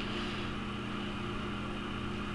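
Steady low electrical hum with a faint hiss, unchanging throughout: room tone with no distinct event.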